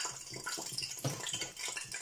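Water boiling in a pot of yam and garden eggs, bubbling and lightly splashing, with small knocks and clicks of the pot.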